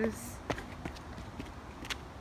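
Footsteps going down a dirt trail and rough stone steps: a few soft taps and scuffs over low outdoor background noise.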